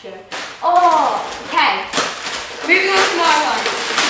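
Children's voices talking and exclaiming, mixed with short noisy rips and rustles of wrapping paper being torn off a present.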